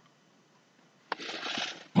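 Near silence, then about a second in a small mouth click and a short breath drawn in just before speaking.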